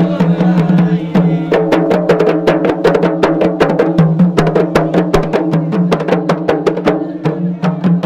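Kompang, Malay hand-held frame drums, beaten by a marching troupe with many quick strokes, several a second, over a steady held tone.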